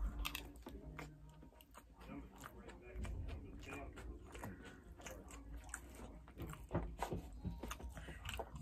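Close-up chewing of a mouthful of Mexican takeout food, a run of small wet mouth clicks and smacks, with a fork picking through the food in a paper-lined takeout container.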